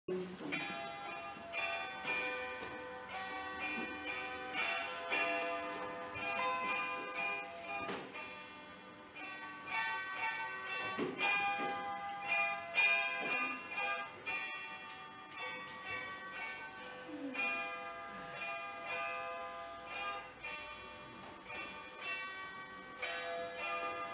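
Zither plucked in a slow instrumental introduction to a folk ballad: single notes and small chords, each ringing on and overlapping the next.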